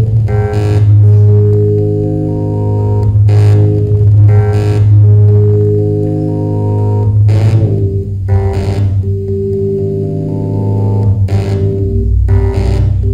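An 8-bit synthesizer built on bare circuit boards, played live by turning its knobs. A held low bass note sits under layered electronic tones that shift in pitch, with pairs of short hiss bursts about every four seconds.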